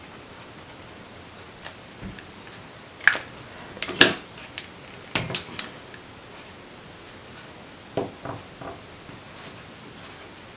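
Plastic paint-marker caps snapping on and off and a marker being set down on a tabletop: a few sharp clicks and light knocks, the loudest about four seconds in.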